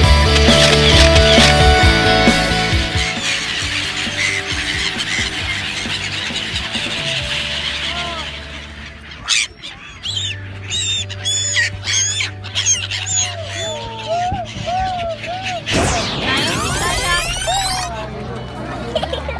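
Rock music that fades out about halfway through, then a flock of gulls calling with many short, arched, high cries.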